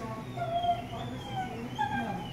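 Thin, whining cries from a small animal: a few short calls that glide up and down in pitch, the loudest about half a second in and another near the end.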